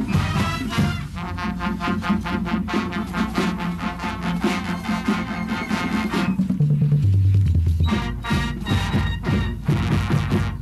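College marching band playing brass and drums in a brisk rhythmic passage. About two-thirds of the way through, a loud low brass line steps down in long held notes, and then the drums and brass hits come back in.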